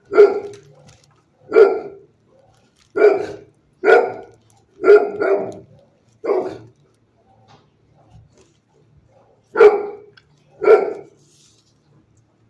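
A dog barking in a kennel building, single barks with echo trailing off each one: about seven over the first six seconds, a pause, then two more near the end.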